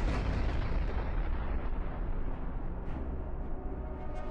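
A large missile warhead explosion: a heavy boom right at the start, then a long low rumble that slowly fades.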